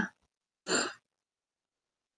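A woman's short breathy sigh, under half a second long, about two-thirds of a second in; the rest is silent.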